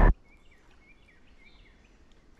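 Background music cuts off abruptly at the start, leaving very faint outdoor ambience with a soft chirp repeated about every half second.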